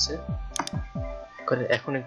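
Background music with plucked-guitar-like tones, with two sharp computer mouse clicks in quick succession about half a second in and another click near the end.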